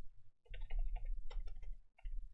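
Computer keyboard typing: a quick run of key clicks, broken by a short pause a little before half a second in, over a steady low hum.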